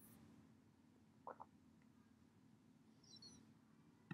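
Near silence: faint room tone with a very faint short blip about a second in and a faint brief high chirp about three seconds in.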